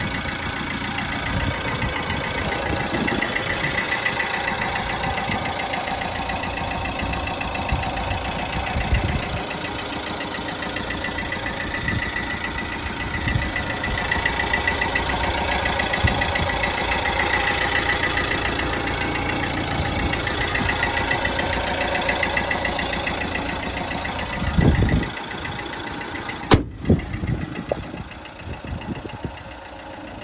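Vauxhall Corsa van engine idling steadily, heard close up under the open bonnet. Near the end come a few thumps and one sharp bang, the bonnet being shut, after which the idle sounds quieter.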